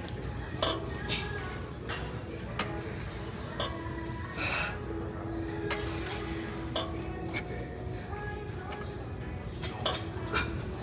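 Metallic clinks and clanks from gym weight machines' plates, scattered irregularly over music with held notes.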